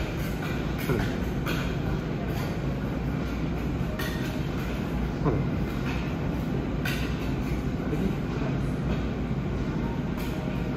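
Two metal spatulas chopping and scraping an ice cream base across a stainless-steel cold plate for rolled ice cream, with scattered sharper scrapes and taps of blade on steel over a steady low rumble.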